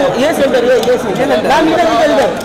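Several voices talking and calling out over one another at once, with no single clear speaker: photographers shouting for poses.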